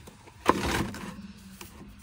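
Plastic storage basket of koozie-sleeved mason jars being handled on a shelf: a sharp knock about half a second in, then a short scraping rustle that fades.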